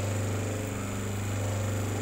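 Semi-automatic hydraulic paper plate machine running, its electric motor giving a steady low hum.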